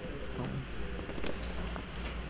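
Faint taps and rustling of a cardboard product box being turned over in the hand, over a steady low hum.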